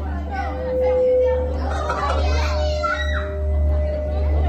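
Children's voices and audience chatter, busiest in the middle, over a show soundtrack of long held notes and a steady deep rumble.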